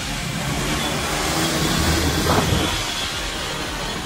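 Several sport motorcycles running together at riding speed, their engines mixed with heavy wind rush on a bike-mounted camera mic. About two seconds in, one engine note rises briefly as a bike is revved.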